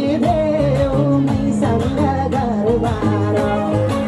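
A song with a wavering sung melody over a steady bass line and a regular drum beat.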